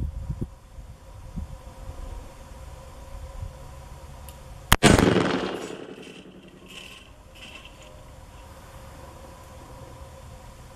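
A single shot from a .44 Magnum Smith & Wesson Model 29 revolver with a 4-inch barrel, about halfway through: one sharp, loud crack, then an echo that dies away over about a second.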